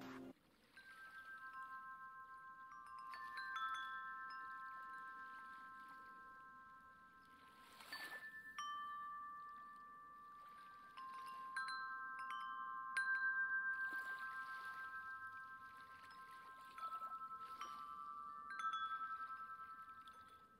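Faint chimes ringing: a few long, overlapping tones, with a fresh strike every second or few and small high pings among them, the whole fading out at the end.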